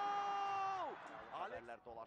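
A single voice holding one long steady note for about a second, then falling away. Fainter voices follow.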